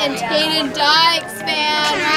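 Children's high-pitched voices, with a few long drawn-out sounds.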